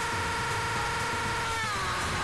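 A steady buzzing electronic tone over a noisy hiss, the glitched audio of a corrupted meme clip. It holds one pitch, then slides slightly down near the end.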